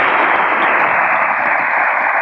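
Large audience applauding: many hands clapping in a dense, steady, loud stream.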